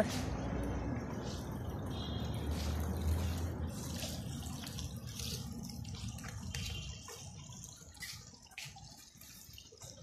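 Swimming-pool water trickling and dripping, over a low rumble that fades out about seven seconds in.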